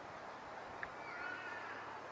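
Faint background hiss with a small click, then a thin bird call that slides downward in pitch about a second in.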